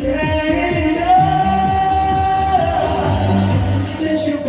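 A man singing a karaoke cover of a pop dance song over its backing track, which has a steady drum beat. A long held high note sounds from about a second in until past the middle.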